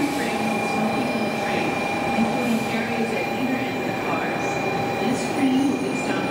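Shinkansen bullet train rolling along a station platform: a steady rumble of wheels on rail with a thin electric whine held over it.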